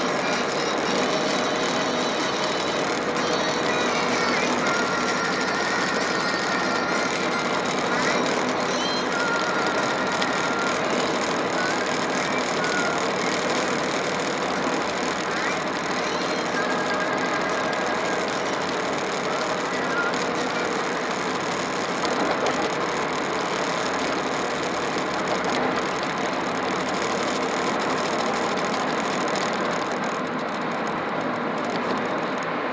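Steady road and engine noise from a truck cruising on a highway, with short steady tones coming and going over it.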